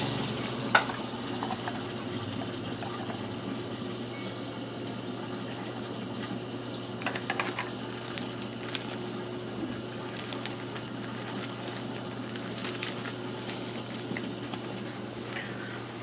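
Steady rush of water circulating through a reef aquarium's sump under the tank, over a low steady hum. A few light clicks and rustles, about a second in and again around the middle.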